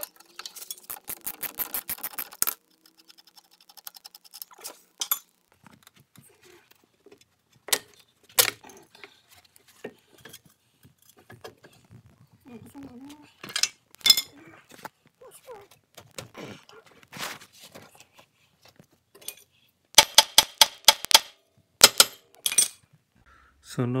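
Ratchet wrench on a 24 mm socket clicking in quick runs as it turns the bottom nut of a Mercedes GL350 front air strut, once at the start and again near the end. Scattered metal clinks and knocks of tools and suspension parts in between.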